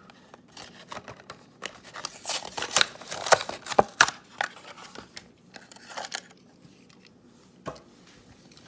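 A die-cast toy's blister pack being torn open by hand: a quick run of crackles and snaps from the plastic bubble and cardboard card, loudest about two to four seconds in. It quietens as the truck comes free, with one more click near the end.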